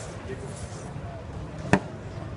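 A single sharp knock, near the end, as a metal aerosol spray can is set down on a granite worktop, over a steady background of voices.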